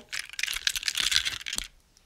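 Small plastic toys clicking and clattering as a hand rummages and picks up a toy sailboat, a quick run of light clicks that stops shortly before the end.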